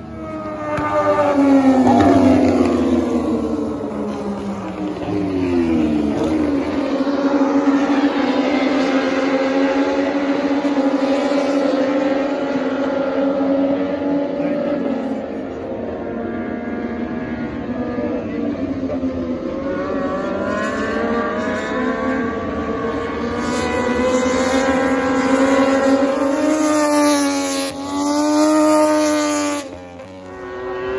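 Racing motorcycle engines at high revs going past on the circuit. The pitch falls over the first several seconds as they slow, holds fairly steady, then rises again with a quick sweep near the end as they accelerate.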